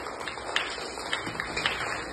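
A child's running footsteps on a concrete floor: a quick, irregular series of light steps.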